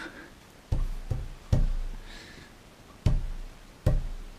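Fists pounding on a wooden tabletop, five dull thumps in two groups: three in quick succession, then after a pause two more. The pounding is a reaction to the burning pain of very hot chili.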